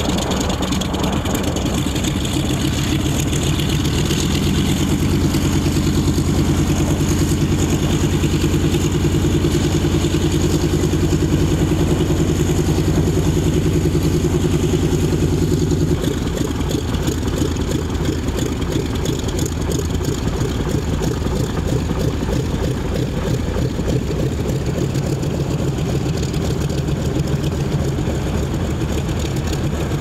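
A Mitsubishi A6M Zero's radial engine runs at low power with the propeller turning as the fighter taxis, a steady hum. The engine note changes abruptly a little past halfway.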